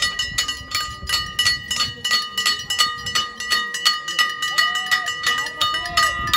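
A metal handbell rung continuously with rapid strokes, about four or five a second, its bright ringing tone sustained between strikes. Voices can be heard faintly underneath.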